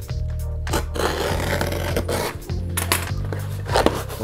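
Background music over the rustling and scraping of a brown paper parcel being pulled open by hand, with several sharp crackles of paper.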